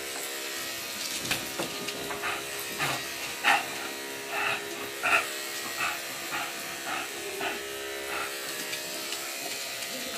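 A Yorkshire terrier and an English bulldog playing, with a string of short play growls and yips from about three seconds in. Under them runs the steady hum of electric grooming clippers.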